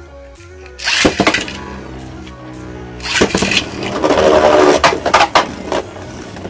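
Two Beyblade spinning tops launched with ripcord launchers into a plastic stadium: a loud ripping launch about a second in, another about three seconds in, then the tops spinning and clattering against each other and the stadium floor and wall. Background music plays underneath.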